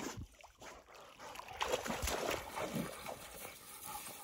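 A dog swimming and moving through creek water: irregular splashing and sloshing, thickest about halfway through, with the dog's breathing.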